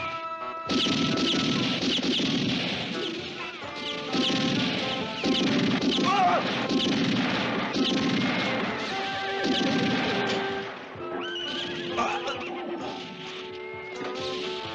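Western film score playing, with crashing noises from a fistfight. A horse whinnies with a rising and falling call about six seconds in.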